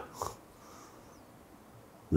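A brief breath or snort-like sniff from a man about a quarter second in, then quiet studio room tone.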